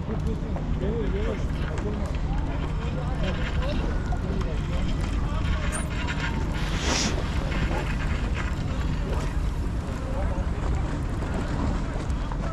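Wind buffeting the microphone with a steady low rumble, with a brief stronger gust about seven seconds in and faint voices in the background.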